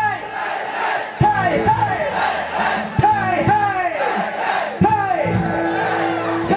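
Sound from a live band's PA: a pitched sound that rises briefly and then swoops down, repeated mostly in pairs, with a steady held note coming in near the end, over crowd noise.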